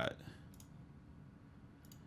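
Near silence with a few faint computer mouse clicks: one about half a second in and a couple more near the end. A man's last word trails off at the very start.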